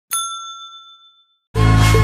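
A bright notification-bell 'ding' sound effect from the animated subscribe card's bell icon being clicked, one strike ringing out and fading over about a second. About a second and a half in, loud music with a heavy bass beat starts abruptly.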